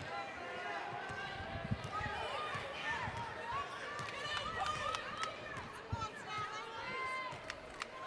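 Sneakers squeaking on a hardwood basketball court in many short, overlapping chirps as players move and cut. There are scattered knocks of a basketball being dribbled and faint voices from players and a sparse arena crowd.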